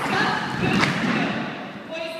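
Feet stomping on a wooden floor: a sharp thud at the start and another a little under a second in, with voices in the room.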